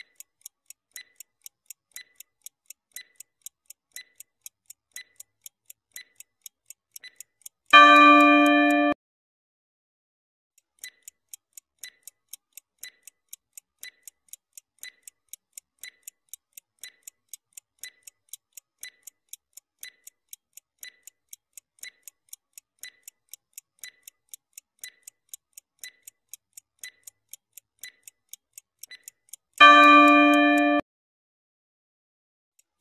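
Countdown-timer sound effect: a clock ticking steadily, several ticks a second. A loud bell-like ring about a second long sounds twice, about eight seconds in and at the very end, each marking the countdown running out, with a short silence after the first before the ticking starts again.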